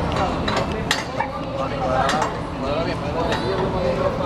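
Voices of a crowd talking over one another, with a few sharp clinks and knocks, one about a second in and another past three seconds.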